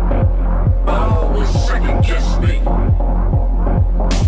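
Techno mixed live on DJ decks: a steady four-on-the-floor kick drum at about two beats a second over a deep, sustained bass. The highs are filtered away at first, and brighter sounds come back in about a second in.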